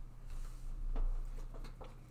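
Tarot cards being handled on a cloth-covered table: a soft slide of card, then several light taps and clicks as the deck is picked up and cards are set down.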